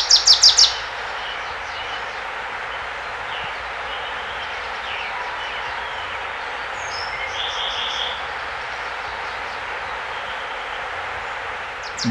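A bird calling a rapid run of sharp high notes at the start, then a steady hiss of background ambience with faint scattered bird chirps.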